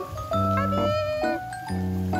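Siberian husky giving one high whine, rising at the start and lasting under a second, over background pop music with a steady bass line.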